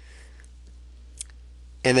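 Quiet pause over a steady low hum, with one short sharp click a little after the middle; a man's voice starts right at the end.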